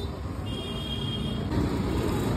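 Street traffic noise: a steady low rumble of passing vehicles, with a faint high steady tone for about a second near the middle.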